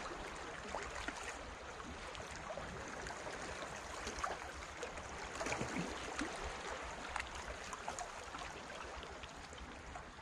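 Calm sea water lapping and gurgling among concrete tetrapods at the waterline: a steady wash broken by small irregular splashes.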